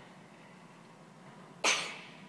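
Quiet room tone, then a single short cough near the end.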